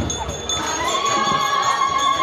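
A high vocal cry that rises about half a second in and is then held on one steady pitch, a sound typical of celebratory ululation. It sounds over processional chanting and drumming.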